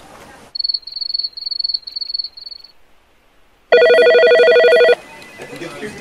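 Electronic telephone ringing for an incoming call: a high, warbling trill broken into quick pulses for about two seconds, then after a pause a louder, steady, buzzy tone for about a second.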